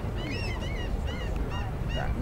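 Birds calling in quick, short, high calls, several a second, over a steady background din.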